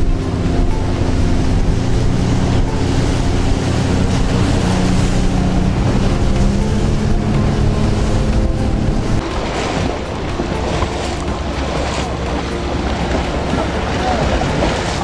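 A speedboat's engine running steadily at cruising speed, with water rushing past the hull and wind buffeting the microphone. About nine seconds in, the engine tone drops away, leaving mostly splashing water and wind.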